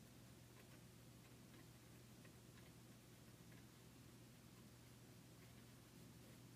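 Near silence: a low steady hum with faint, irregular ticks of a pencil tip touching and marking the collage surface.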